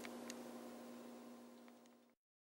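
Faint steady electrical hum from studio equipment, with a couple of faint clicks, fading out near the end.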